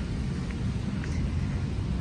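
Wind buffeting the phone microphone: a steady low rumble with a faint hiss above it, and a couple of faint ticks.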